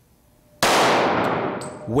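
A single shot from a .40 caliber handgun about half a second in, sudden and loud, followed by a long echo that dies away over more than a second in an indoor firing range.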